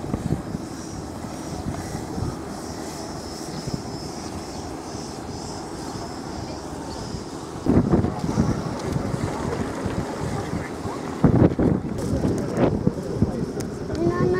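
Wind buffeting the microphone outdoors, with people's voices in the background; the wind gets louder and gustier about eight seconds in.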